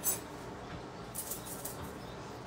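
Light clicks and rustles from small objects being handled: a brief burst at the start and a short cluster about a second in, over quiet room tone.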